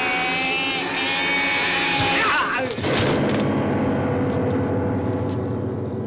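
A man's long, high, strained scream, held steady for a couple of seconds and breaking off in a short falling cry, as he is being choked. A low, dense rumble follows.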